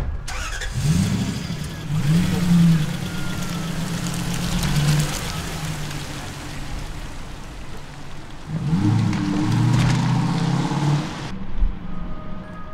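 A car engine starting and revving up, then running steadily as the car pulls away. The revs rise again about nine seconds in, and the sound cuts off suddenly near the end.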